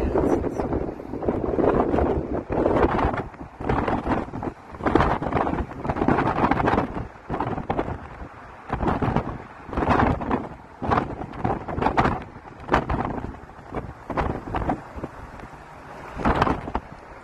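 Wind buffeting a phone microphone held out of a moving car, in irregular gusts over the car's road noise.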